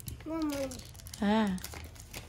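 Light crinkling and clicking of a plastic snack packet being handled and pulled open, with two short voiced sounds from a person partway through.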